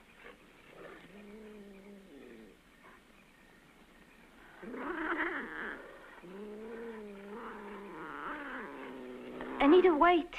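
Drawn-out, cat-like yowling in four long calls that waver in pitch. The last call, near the end, is the loudest and rises sharply.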